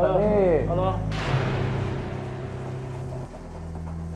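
A sudden boom with a hissing tail that fades away over about two seconds, over steady low background music, just after a short spoken word.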